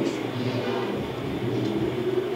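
A steady low mechanical hum that holds one pitch throughout.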